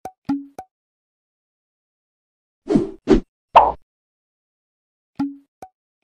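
Cartoon sound effects for an animated subscribe button: short clicks and plops, each with a brief tone, near the start, then three louder pops in quick succession in the middle, and the same clicks and plops again near the end.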